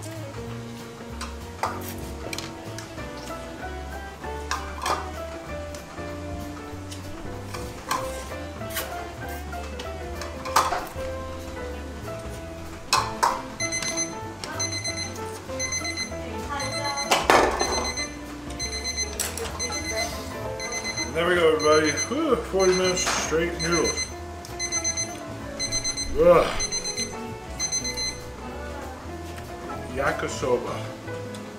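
Electronic countdown-timer alarm beeping in a fast, even series for about fourteen seconds from about halfway in, signalling that the challenge's time limit is up. Background music plays throughout, with a few knocks and voices near the end of the beeping.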